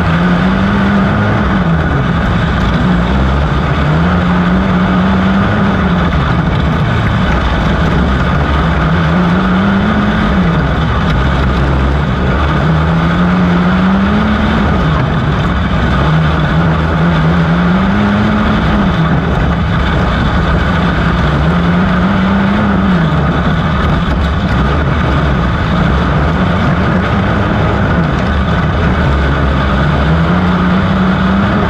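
QRC 250 intermediate outlaw kart's engine at racing speed, heard onboard: its revs climb on each straight and drop off into each corner in a regular cycle about every four seconds, lap after lap.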